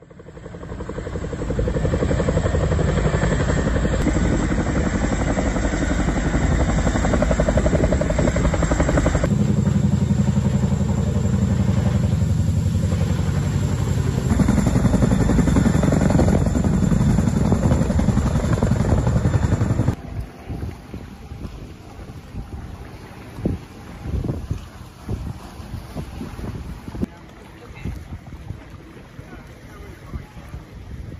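CH-47 Chinook tandem-rotor helicopter hovering low over water: a heavy, rapid rotor beat mixed with the rush of rotor wash. About twenty seconds in it cuts to a much quieter sound of wind gusting on the microphone and choppy water.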